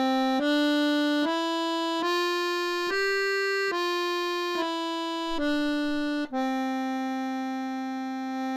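Sonola piano accordion playing a slow five-note C major scale on the treble keys, one note at a time from middle C up to G and back down, each note a little under a second long, ending on a held C. The notes are played without bass.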